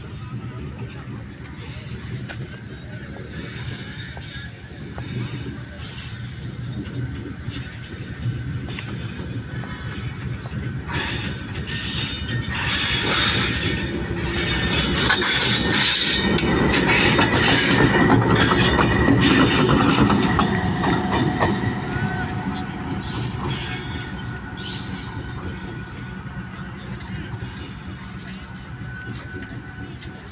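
Pakistan Railways GEU-20 diesel-electric locomotive running light past the listener, with engine rumble and wheels clicking over the rail joints. The sound builds, is loudest around the middle as the locomotive passes close by, then fades as it moves away.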